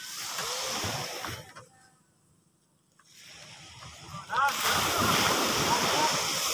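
Sea surf rushing on a beach, with wind noise on the microphone. It drops to near silence about two seconds in and comes back louder about four seconds in, and men's voices call out over it near the end.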